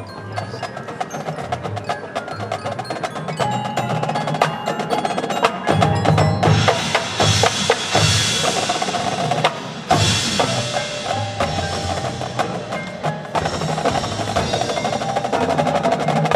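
High school marching band playing its field show, with drums and mallet percussion to the fore. The band swells louder about six seconds in, breaks off briefly near ten seconds, and plays on.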